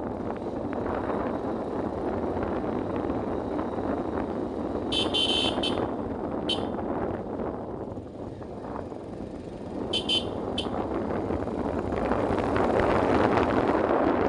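Motorcycle's electric horn beeping three times: about five seconds in, a short beep a second later, and another about ten seconds in. Under it, the steady rush of wind on the microphone and the engine running while riding.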